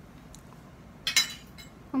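A metal fork clinks once, briefly and sharply, against a dish about a second in, over a quiet room.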